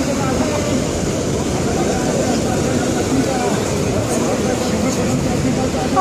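Steady low rumble of beach surf and wind, with faint voices mixed in.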